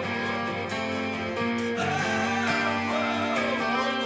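Hard rock song playing, with guitar to the fore.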